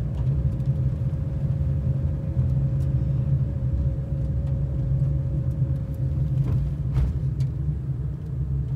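Car interior noise while driving up a rising road: a steady low rumble of engine and tyres, with a faint steady whine that fades out about six and a half seconds in and a single click near the end.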